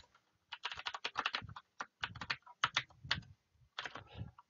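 Typing on a computer keyboard: a quick run of keystrokes in several short bursts with brief gaps, starting about half a second in.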